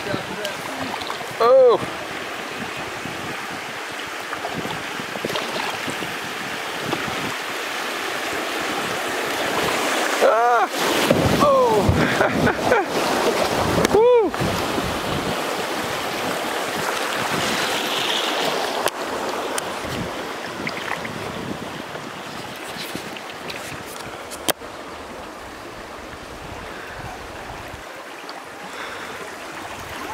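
Steady rush of creek water running over shallow riffles around a kayak, swelling for a few seconds about a third of the way in. A few short voice-like calls, each rising and falling in pitch, come through once near the start and again around ten to fourteen seconds in.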